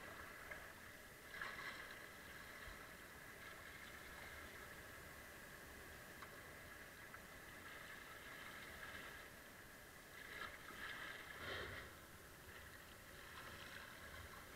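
Faint water sounds of a kayak being paddled down a river: paddle blades dipping and water moving along the hull, a little louder about a second in and again around ten to twelve seconds.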